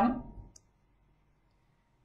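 A single faint, very short click about half a second in, as a woman's voice trails off; the rest is silence.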